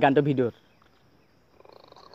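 A man's voice ending on a drawn-out syllable that falls in pitch, then near silence.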